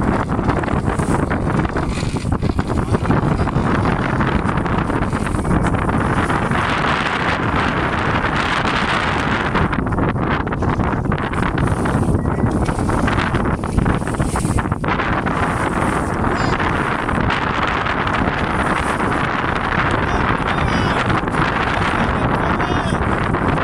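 Steady, loud wind rumbling on the microphone aboard a small boat on choppy sea, over the rush of the water.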